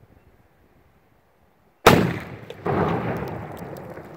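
A pyrotechnic charge set in a pumpkin goes off in one sudden, loud blast about two seconds in, blowing the pumpkin apart. Under a second later comes a longer rush of noise that slowly fades.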